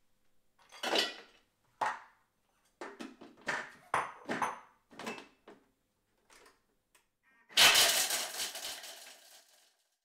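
Pieces of chopped dark chocolate clattering into a Thermomix's stainless steel mixing bowl in a series of short knocks and clinks. About three quarters of the way in, the Thermomix blades run loudly for about two seconds, crushing the chocolate finely, and the sound fades out.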